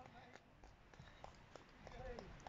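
Near silence: faint outdoor ambience with a few faint ticks.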